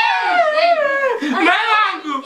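A person wailing in a high, wavering voice, the pitch rising and falling without a break until a short drop near the end.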